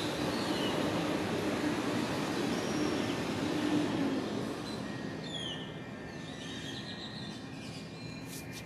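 Steady mechanical noise with a low hum, easing after about five seconds, with a few short high chirps over it.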